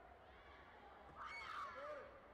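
A brief high-pitched shout about a second and a half in, over the faint murmur of a sports hall.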